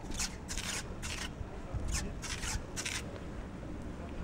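Handheld camera handling noise: about six short rustling rubs close to the microphone in the first three seconds, over a steady low rumble.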